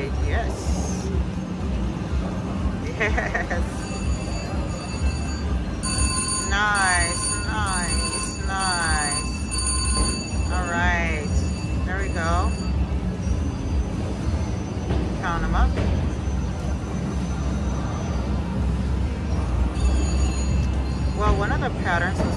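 Electronic slot-machine chimes and warbling jingle tones from a VGT Mr. Money Bags 2 reel slot as a win's credits count up. The ringing is densest from about four to thirteen seconds in, over the steady hum of the gaming floor.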